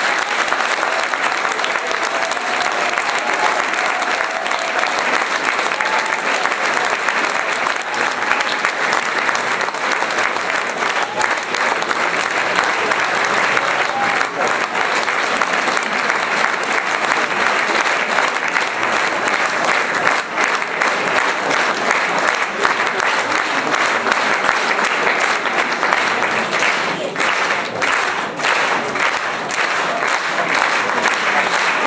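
A large audience clapping steadily and evenly.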